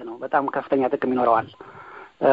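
Speech only: a voice talking, pausing briefly near the end.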